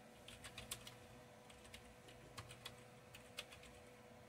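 Faint keystrokes on a computer keyboard, typed in several short runs of clicks, over a steady faint hum.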